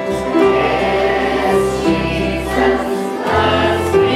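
A group of children singing together over a musical accompaniment with held bass notes.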